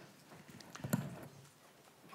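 A quiet pause in a large room, with a few faint short clicks and taps about halfway through.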